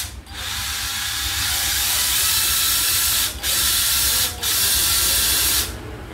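National EZ6507 cordless drill-driver run free in the air: the motor and chuck whir steadily, with two brief breaks in the second half, and stop shortly before the end.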